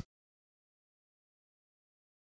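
Near silence: the audio is cut to dead quiet, apart from the tail end of a short noise at the very start.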